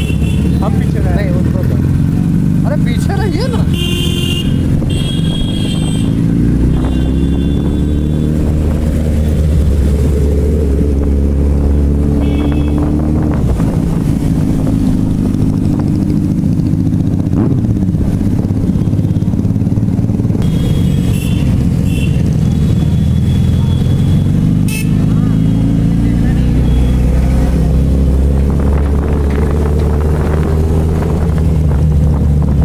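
Motorcycle engines running during a group ride on a town road, the nearest engine's pitch climbing slowly as it accelerates, once in the first half and again near the end, over road and wind rush. Several short high tones sound on and off above the engine noise.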